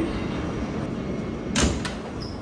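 Subway car's sliding doors closing, shutting with a loud thud about one and a half seconds in, then a lighter knock, over the train's steady low hum.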